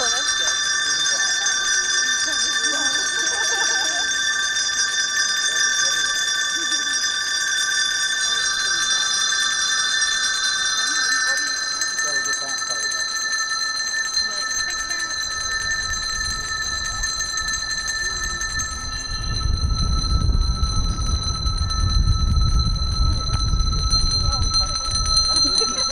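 A crowd's colour-coded handbells ringing together in a sustained, shimmering chord of several held notes. Some notes drop out about halfway through and another later on, as the chord changes. A low rumble comes in near the end, under faint crowd chatter.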